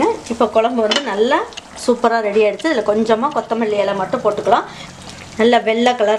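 A pan of thick white vegetable kurma simmering and bubbling steadily, heard under a person talking.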